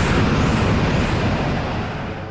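Cartoon sound effect of a heavy landing blast: a loud rumble slowly dying away, with a high whistle gliding upward through the first half.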